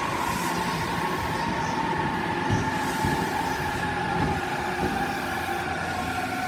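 JR East E259 series Narita Express electric train rolling into a station platform as it arrives. Steady wheel and running noise, with a high whine that falls slowly in pitch as the train slows.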